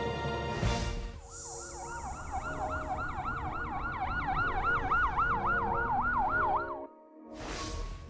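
A fast wailing siren, rising and falling about four times a second, sounds over a steady held music bed as part of a news bumper. It is framed by a whoosh at the start and another at the end, and cuts off abruptly just before the second whoosh.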